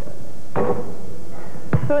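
A basketball in a gym: a ringing knock as it strikes the hoop about half a second in, then a sharp thump as it bounces on the hardwood floor near the end.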